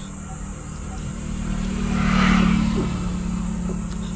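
A road vehicle passing close by, heard from inside a parked car: its sound swells to its loudest a little past halfway, then fades, over a steady low hum.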